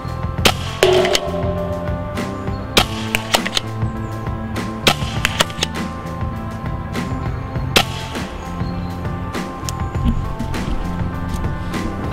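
Background music with a dozen or more sharp cracks at irregular intervals, from test-firing a pump paintball marker with First Strike rounds at a target shield.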